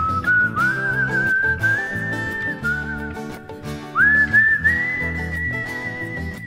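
A man whistling a melody over steady acoustic guitar strumming. It comes in two phrases, each opening with an upward slide; the second climbs to a long, high held note.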